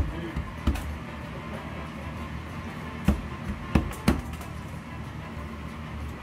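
Hands patting and slapping corn masa dough flat in a glass baking dish: about five short, sharp slaps spread over a few seconds, over a steady low hum.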